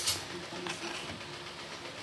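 A metal ladle clinks and scrapes against a metal pot while stirring thick, nearly cooked mung bean and coconut milk stew: a sharp scrape at the start, a fainter one under a second in, over a steady low hum.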